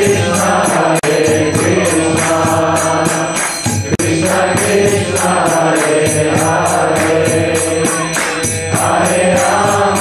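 Kirtan: a man's voice chanting a mantra into a microphone, with small hand cymbals (karatalas) striking in a steady rhythm over a steady low drone.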